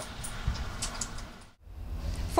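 Steady outdoor background noise, a low rumble under a soft hiss, that drops out for a moment about one and a half seconds in before resuming.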